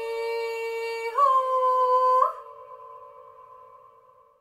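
Wordless high voice singing a slow melody in long held notes. It glides down into a low note, steps up about a second in and again after about two seconds, then fades away near the end.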